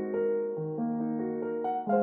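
Background music: slow solo piano, held notes changing every half second to a second.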